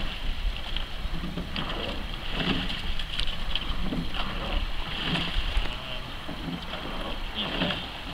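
Water splashing and lapping about once a second from a double sculling boat's oars and hull on calm water, over a steady low rumble and wind on the microphone.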